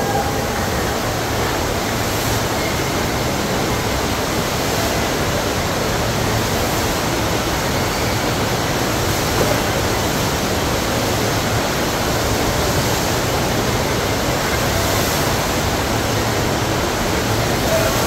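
Steady rush of water pumped in a thin sheet up the ride surface of a FlowRider sheet-wave machine.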